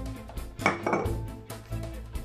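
Background music with a steady beat, and about two-thirds of a second in a single sharp clink of glass labware, with a brief ring.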